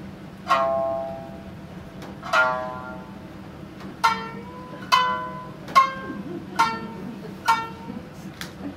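A plucked string instrument playing seven single notes, each ringing and fading. The first two come about two seconds apart, then the notes quicken to nearly one a second, over a steady low hum.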